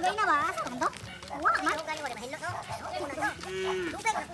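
Several people's voices calling out and talking over one another, with one long held call near the end.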